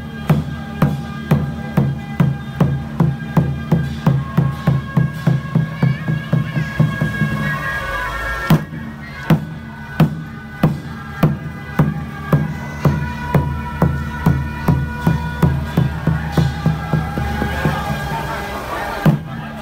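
Procession music: percussion beating an even rhythm of about two and a half strikes a second under sustained, reedy wind-instrument tones. The beat breaks off briefly about eight seconds in and comes back with a loud crash.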